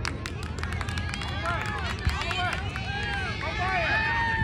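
Several high voices of players and spectators shouting and calling out over one another on a soccer field, getting louder toward the end, with a few sharp clicks near the start and a steady low rumble underneath.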